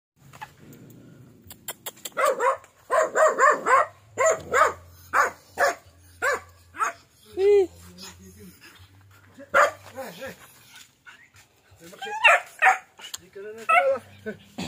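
Small chained dog barking repeatedly in short, sharp barks, starting about two seconds in, with one longer yelp about halfway through and another flurry of barks near the end.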